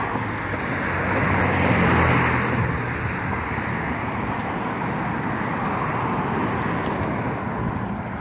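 Road traffic: a car passes close with its engine hum, loudest about two seconds in, then a steady wash of traffic noise.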